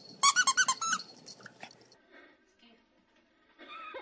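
A rapid run of about eight loud, high squeaks packed into under a second, each rising and falling in pitch. A brief voice follows near the end.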